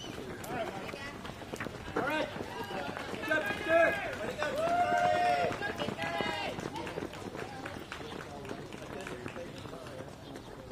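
Many runners' shoes slapping on an asphalt road, a dense patter of footfalls, with voices calling out and talking in the middle of the stretch.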